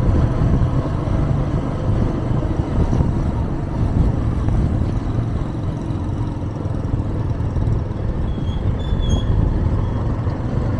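Steady low rumble of a car's engine and tyre noise on the road while driving, heard from inside the car.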